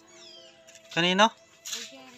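A cat meowing once: a short, loud call rising in pitch about a second in.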